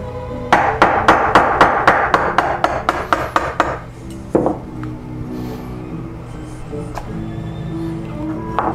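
Wooden carver's mallet striking a chisel driven into a turned hardwood block: a quick run of about fourteen blows, roughly four a second, then a single harder knock and one more later. The chisel is splitting two turnings apart along a marked line.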